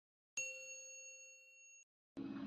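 A single bright chime sound effect of a subscribe-button tap: one ding struck about a third of a second in, ringing with a clear tone and fading out over about a second and a half.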